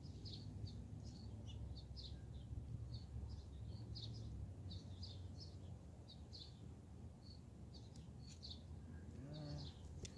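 Small birds chirping repeatedly in the background, several short high chirps a second, over a faint steady low hum.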